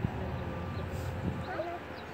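Steady low rumble of freeway traffic with faint, murmured distant voices, and a sharp click right at the start.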